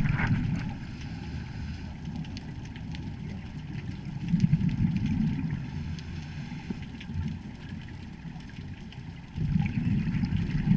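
Muffled underwater sound through a camera housing: a diver's scuba regulator exhaust bubbles rumbling in low swells, one right at the start, one about four seconds in and one near the end, with faint scattered clicks between them.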